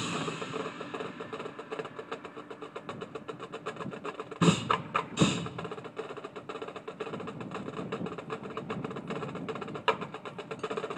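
Marching band playing a fast percussion-driven passage, rapid drum and mallet strokes over held pitched notes, with two loud accented hits about four and a half and five seconds in.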